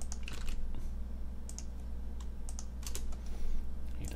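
Typing on a computer keyboard: irregular, scattered keystroke clicks.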